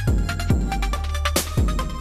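Electronic trap beat playing: synthesized sine kick drums that drop quickly in pitch, layered over a held sub bass, with synth notes and one sharp backbeat hit about one and a half seconds in.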